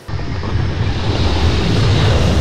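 Sound-effect rush of storm wind with a deep rumble. It starts suddenly and swells steadily louder.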